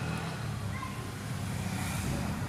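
Steady low rumble of background vehicle noise.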